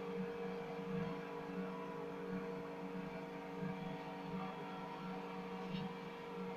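Steady machine hum: a low drone with a higher tone above it, holding even throughout, and a faint click near the end.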